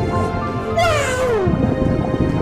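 Background music with steady held notes, over which a pitched cry slides sharply downward for most of a second, starting about three-quarters of a second in.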